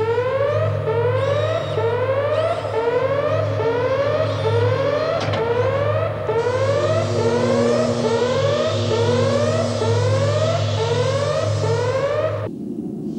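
Synthesized sci-fi teleporter sound effect for a 'molecular transmission': a rising electronic whoop repeating about three times every two seconds over a steady low hum, with a hiss joining in about halfway through.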